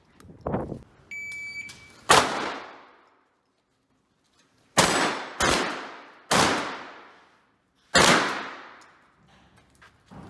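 Shotgun shots fired one at a time, about six, each ringing out and dying away over a second; the first is quieter. A short steady electronic beep sounds about a second in, before the loud second shot.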